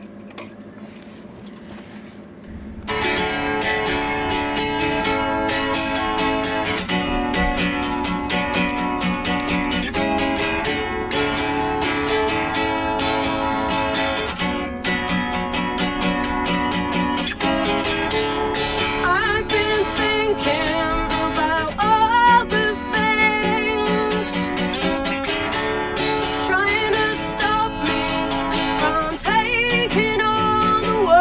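Acoustic guitar strummed in steady chords, starting about three seconds in, with a woman singing over it from about halfway through.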